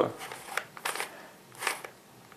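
Plastic Rubik's cube being turned by hand: a few short, dry clicking scrapes as its layers rotate.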